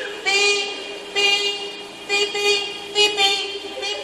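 Car horn sounding in short repeated blasts, about one a second, the pattern of a triggered car alarm.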